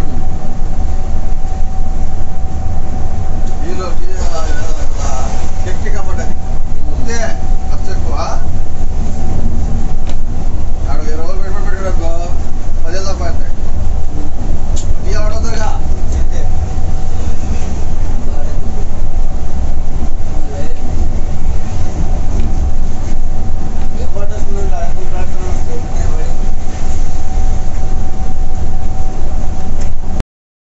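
Cabin noise of a Volvo B11R sleeper bus cruising on the highway: a loud, steady low road-and-drivetrain rumble with a faint steady hum above it. People talk briefly a few times in the background.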